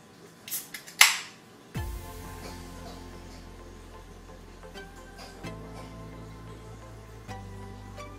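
Coors Light aluminium can being opened: a couple of small clicks from the tab, then a sharp pop and hiss about a second in. Background music with held notes and a bass line starts about two seconds in and carries on.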